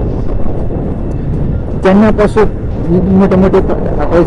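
Motorcycle riding at highway speed: a steady, heavy rush of wind and engine noise on the microphone. A man's voice speaks briefly twice in the second half.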